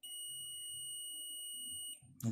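A digital multimeter's continuity buzzer sounding one steady high beep for about two seconds, then cutting off, as the probes are held across the bell's circuit: the beep signals a short.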